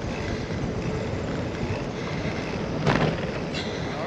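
Bicycle riding along a trail: a steady rushing of wind buffeting the microphone over the rolling of the tyres, with one brief sharp knock about three seconds in.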